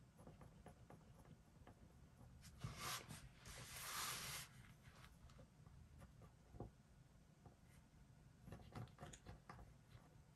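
Faint scratching of a pen writing on planner paper in short strokes, with a louder stretch of paper sliding or rustling across the desk about three seconds in.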